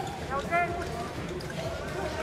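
Indistinct raised voices in an indoor sports arena, with a high-pitched call about half a second in, over a steady low background.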